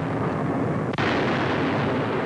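Battle sound of artillery fire and shell bursts: a dense, continuous rumble that jumps suddenly louder with a fresh blast about a second in.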